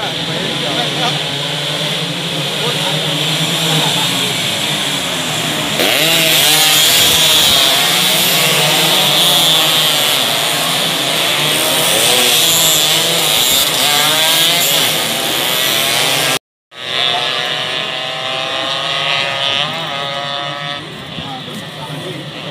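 Several two-stroke underbone racing motorcycles running at high revs as a pack passes, their engine pitches rising and falling with throttle and gear changes, loudest in the middle. The sound cuts out briefly about 16 seconds in, then more bikes are heard accelerating with rising pitch.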